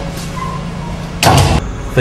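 A panelled wooden door shutting with one loud, short bang a little over a second in, over a steady low hum.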